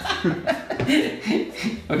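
A man chuckling, a string of short laughs.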